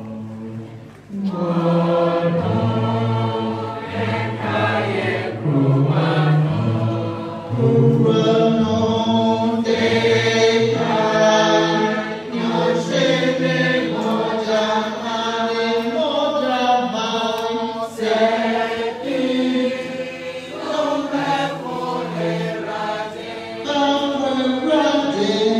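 A congregation singing a hymn together, many voices at once. The singing swells in about a second in, after a brief drop at the start.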